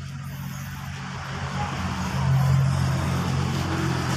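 A motor vehicle engine running close by with a steady low hum, growing louder about two seconds in.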